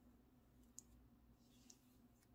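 Near silence: faint room tone with two small, sharp clicks, about a second apart.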